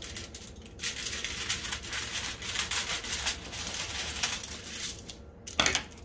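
Scissors cutting through a sheet of aluminum foil, the foil crinkling and crackling as the blades work through it, with a louder crackle near the end.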